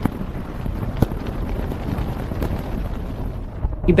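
Sound-effect storm ambience: steady low rumbling wind noise, with sharp cracks about one second and two and a half seconds in.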